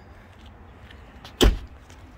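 A Toyota Sequoia's rear side door being shut: one solid thump about one and a half seconds in.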